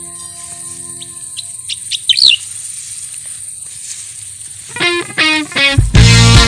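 Birds chirping in a lull between songs, a few short quick chirps about two seconds in over a faint steady high insect-like trill. The last held notes of a song die away in the first second or so, and a quick run of pitched notes near the end leads into the next song.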